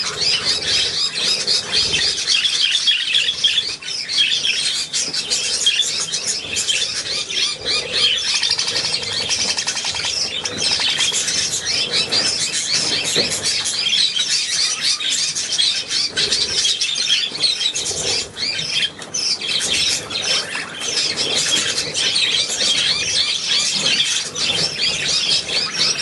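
A flock of caged budgerigars chattering continuously, a dense mix of many high warbling and chirping calls overlapping without a break.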